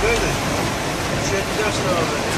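Hail and rain drumming steadily on a minibus's roof and windshield, heard from inside the cabin.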